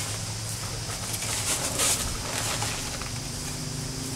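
A metal bow rake scraping and dragging through sand spread over gravel, in uneven strokes, over a steady low hum.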